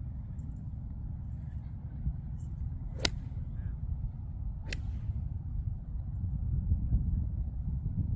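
Golf iron striking a ball off turf: one sharp click about three seconds in, then a second sharp click about a second and a half later, over a steady low rumble.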